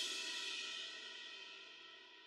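The ring of a final cymbal crash and the last chord of a worship song fading away, dying out about a second and a half in.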